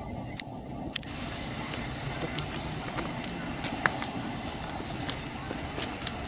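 Trackside background noise: a steady low rumble with scattered short clicks and faint, indistinct voices.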